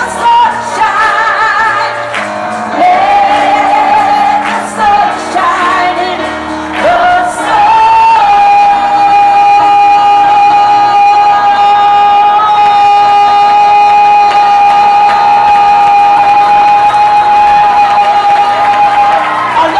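A woman singing live into a microphone: a few melodic phrases with vibrato, then one high note held steady for about ten seconds.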